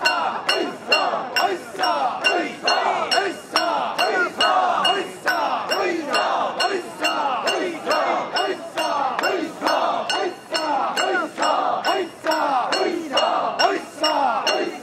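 Many mikoshi bearers shouting a rhythmic carrying chant in unison, about two beats a second, with metal fittings on the portable shrine clinking and ringing on each beat.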